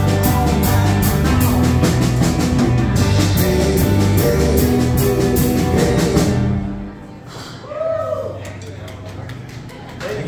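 Live rock band with electric guitars and drum kit playing the last bars of a song, drums beating steadily, the music ending about seven seconds in. A short voice call rises and falls just after, over a low steady hum.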